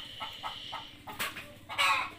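Chicken clucking in short repeated notes, with one louder squawk near the end.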